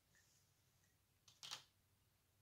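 Near silence: room tone, with one brief soft noise about one and a half seconds in.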